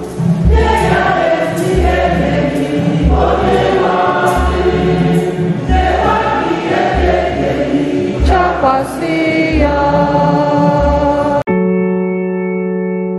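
Gospel song sung by a choir over a band with a heavy bass beat about every second and a bit. About eleven and a half seconds in it cuts off suddenly, giving way to soft electric piano music.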